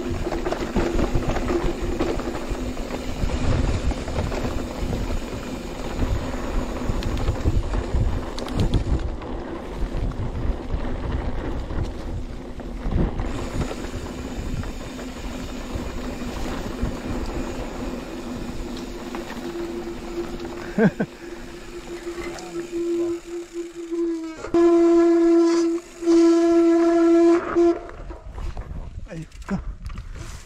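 Mountain bike rolling along a dirt singletrack: wind and tyre rumble with a steady hum. Near the end a much louder buzzing tone rings out for about three seconds, broken once by a short gap.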